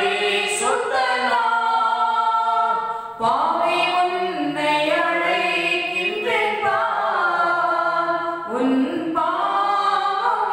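A woman singing solo and unaccompanied, drawing out long held notes with a brief breath break about three seconds in.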